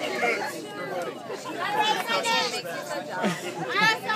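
A group of people talking over one another: steady overlapping chatter of several voices.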